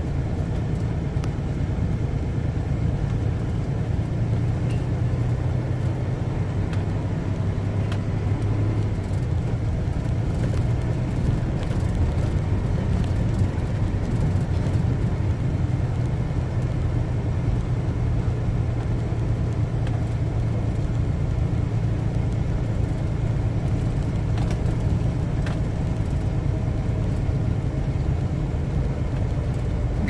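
Semi-truck's diesel engine running steadily at crawling speed, heard from inside the cab, with tyre noise on a gravel road.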